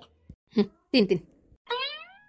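Short high-pitched vocal calls: two brief ones, then a longer call that rises in pitch near the end, sounding like a meow.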